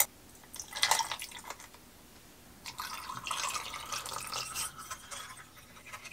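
Liquid poured over ice cubes into a glass pitcher, a steady pour of about two and a half seconds starting about three seconds in, after a few light clinks about a second in.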